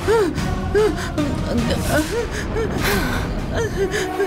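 A woman gasping and whimpering in fright, short rising-and-falling breathy cries about two a second, over background music.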